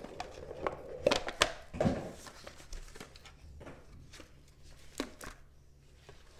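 Trading card boxes and pack wrappers being handled and opened: scattered crinkles, taps and small rips of card packaging, in a cluster about a second in and again around five seconds.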